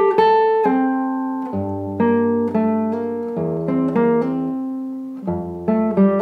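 Nylon-string classical guitar playing a slow Baroque passage: plucked notes and broken chords left to ring over one another, with deep bass notes entering under them twice.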